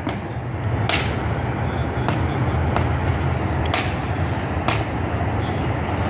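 An engine idling steadily with a low hum, with about five sharp clicks scattered through it.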